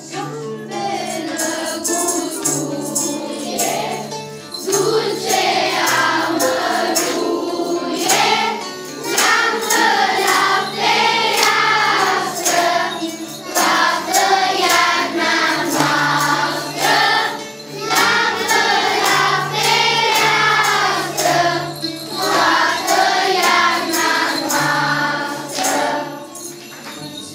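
Children's choir singing a Romanian Christmas carol (colind) in unison, over a steady low instrumental accompaniment, with jingle bells shaken in rhythm.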